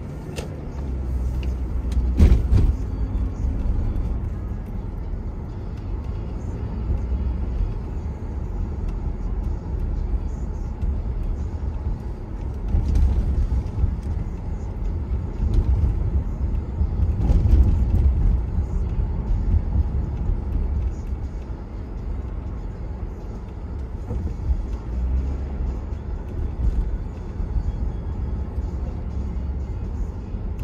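Low, steady rumble of a car driving on city streets, heard from inside the cabin, swelling and easing as it moves through traffic. A few short thumps from road bumps, the loudest about two seconds in.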